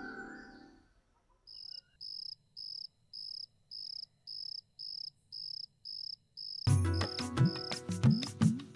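Music fades out; then a cricket chirps in evenly spaced high-pitched pulses about twice a second, the night-time insect sound. Loud music comes in near the end.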